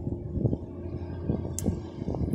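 Wind buffeting a phone's microphone outdoors: an uneven low rumble with a few short gusts, the strongest about half a second in, and a brief hiss about a second and a half in.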